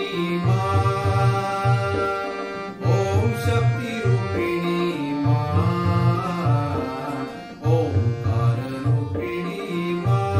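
Harmonium playing a bhajan melody in held, reedy notes over a steady tabla rhythm.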